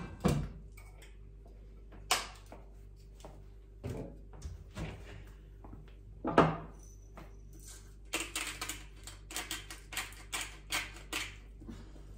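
A few scattered knocks and clinks, then from about eight seconds in a run of quick, regular clicks, about three or four a second, from a glass pepper grinder being twisted over the food.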